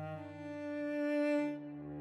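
Slow, calm cello music: long bowed notes over a low sustained bass note, changing pitch a few times and swelling to a peak just past the middle.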